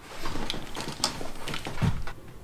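Clicks and rustling from a clamp multimeter and its test leads being handled and set against the battery terminals, with a soft low thump near the end.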